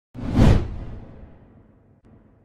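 A whoosh sound effect from a channel logo intro: one sweep that swells quickly, peaks about half a second in, then fades with a low rumbling tail.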